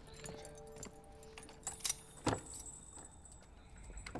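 Keys jangling and metal clanking as a barred prison cell door is unlocked and opened, with a few sharp metallic clicks a little under two seconds in, over quiet background music.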